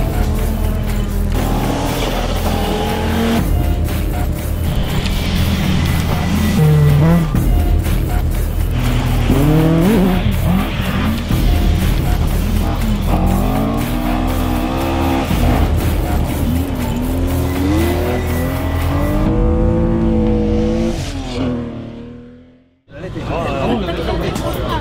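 Rally car engines revving hard through the gears on gravel stages, the pitch climbing and then dropping at each shift, over background music with a steady low bass. The sound fades away near the end.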